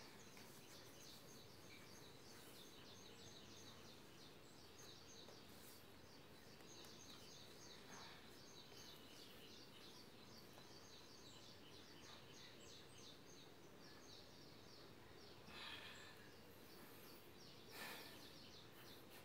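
Near silence: faint room tone with many faint, high bird chirps repeating throughout, and a few soft brief rustles.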